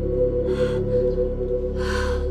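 A woman's breathing in sharp gasps, twice: once about half a second in and again near the end, over held notes of background music.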